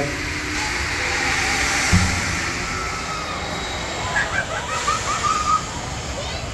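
Outdoor amusement-park noise: a steady rushing hiss, one low thump about two seconds in, and a quick run of short bird-like chirps near the end.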